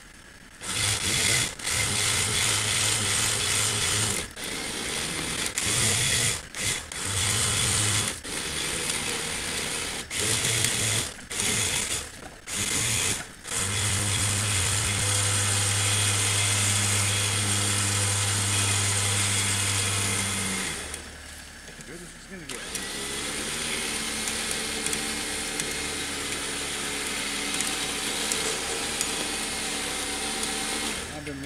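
Badland 12,000 lb electric winch motor running in short bursts of a second or two, stopping and starting about eight times, then running steadily for about seven seconds before cutting off. A steadier, lower mechanical hum continues for the last several seconds.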